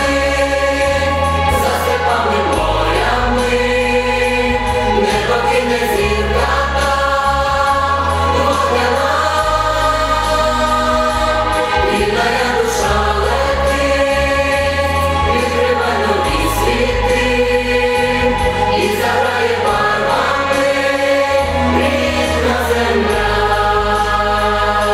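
A folk song performed live: a female solo voice with choral voices and an instrumental accompaniment, its bass line changing note every couple of seconds.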